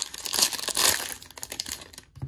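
Foil trading-card pack wrapper crinkling as it is handled and pulled open by hand. The crackling is loudest in the first second and fades toward the end.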